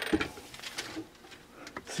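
A clamshell heat press being opened: a short mechanical clatter from the lid and handle at the start, then only a few faint ticks.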